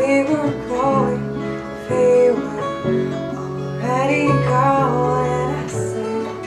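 Band playing an instrumental passage of a song: acoustic guitar with bass and keyboard, a melodic line moving over sustained bass notes.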